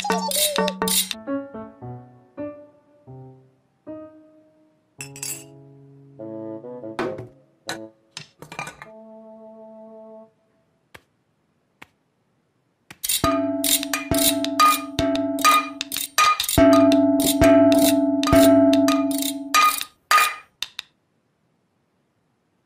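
Metal saucepans being banged and clanged together in a rapid run of clangs over held notes of playful music. This comes after a stretch of sparse, bouncy musical notes.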